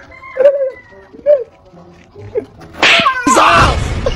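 Two short vocal exclamations, then about three seconds in a sudden loud burst followed by a loud, wavering cry from a person.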